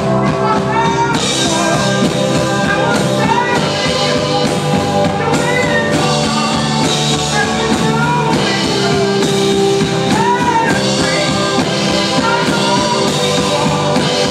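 Live band music: a strummed acoustic guitar and a mandolin in a full, steady band sound, with wordless vocal lines rising and falling over it.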